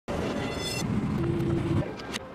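Steady low rumble of airport jet-bridge ambience, with a brief high-pitched beep about half a second in and a held mid-pitched tone near the end.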